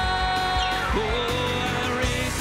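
Live worship band music: a sustained chord with one note sliding steeply down in pitch about half a second in and settling on a held note, then the full band with drums picking up again at the end.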